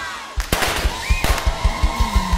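Confetti cannons firing: a sudden loud blast with a rush of hiss about half a second in and a second sharp pop a little after a second, over a band's fast, steady drum beat.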